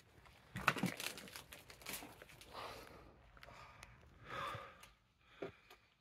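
Faint rustling, crinkling and small crunches of fallen debris and clothing as a person crawls low through a collapsed room, with a few sharp clicks scattered through.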